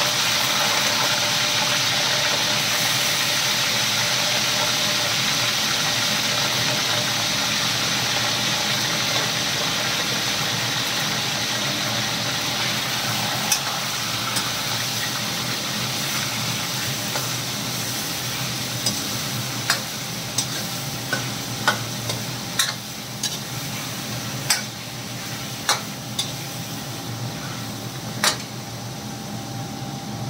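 Raw chicken pieces sizzling and frying in hot ghee in a steel karahi, the sizzle loud at first and slowly dying down. From about halfway, a series of sharp metallic clinks as a steel spoon strikes the karahi while the chicken is stirred.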